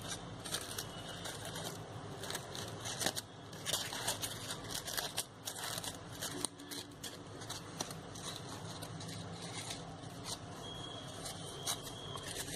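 Crepe paper rustling and crinkling as fingers press and stretch the petals open, in faint, irregular scratchy bursts.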